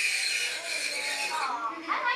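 A metal clip pressed against dry ice, screeching with a steady high squeal, a crazy fingernails-on-the-chalkboard sound. The metal is so much warmer than the dry ice that the dry ice boils off very quickly where they touch. The squeal fades about one and a half seconds in.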